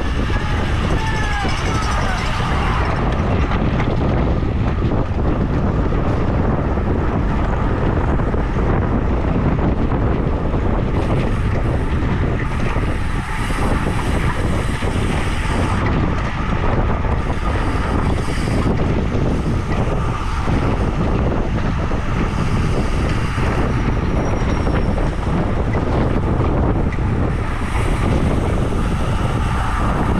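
Wind rushing over the microphone of a camera mounted on a road bike at racing speed, a loud, steady roar of wind noise with no let-up.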